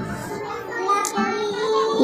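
Background music with a long held vocal note that rises slightly in pitch.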